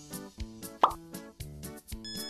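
Light background music with a steady rhythmic beat, and a short cartoon sound effect that sweeps quickly upward in pitch a little under a second in.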